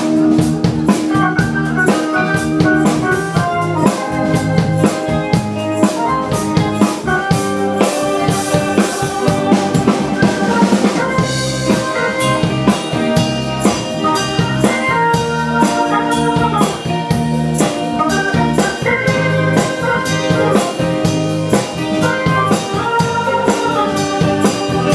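Live band playing an instrumental piece on electric guitar, bass guitar, drum kit and keyboards, with a steady drum-kit beat under the guitar and keyboard lines.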